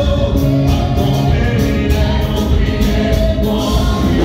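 Gospel worship song sung by a group of voices over loud amplified music with a steady beat, played through large loudspeakers.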